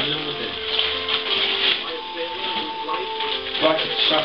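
Paper rustling and crinkling as a present is taken out of a gift bag, over background music with held notes.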